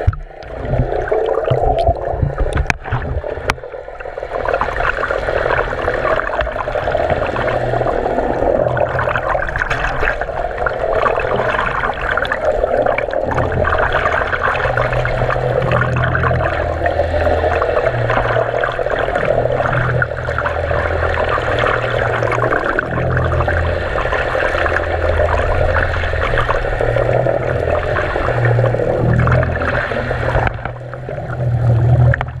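Underwater water noise picked up by a submerged GoPro in its housing: a continuous muffled rushing and gurgling, with a few sharp splashy clicks in the first few seconds. A low hum comes and goes from about halfway through.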